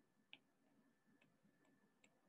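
Near silence with a few faint, short clicks of a stylus writing on a tablet, the clearest about a third of a second in.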